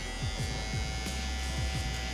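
Electric hair trimmer running steadily with a low hum as it edges up the neckline.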